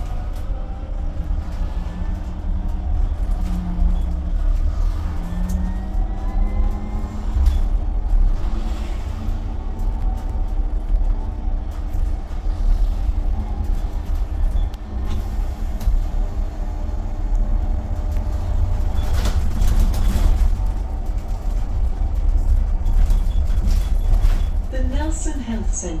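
Cabin sound of an Enviro200 EV electric bus on the move: steady low road and tyre rumble, with the electric drive's whine gliding up in pitch as the bus gathers speed over the first few seconds.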